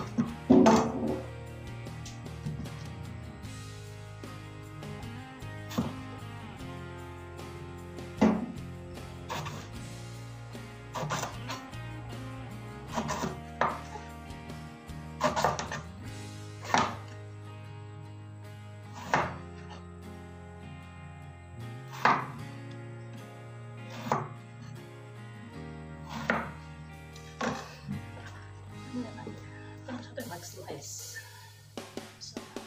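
Knife chopping on a cutting board, a sharp knock every second or two, over background music with steady held notes.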